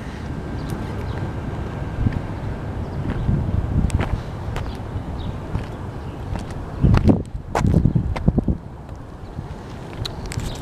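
Wind buffeting the microphone, a steady low rumble, with a few light knocks and louder gusts about seven and eight seconds in.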